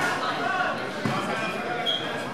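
Spectators and cornermen shouting in a large, echoing hall, with a dull thump about a second in.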